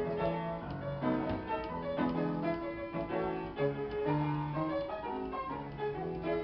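Technola upright player piano playing a paper music roll: sustained chords over a moving bass line.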